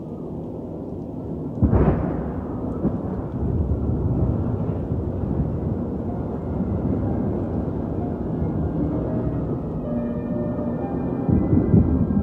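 Recorded thunderstorm opening a melodic black metal intro track: a sharp thunderclap about two seconds in, then rolling thunder rumbling low. A sustained keyboard chord comes in near the end.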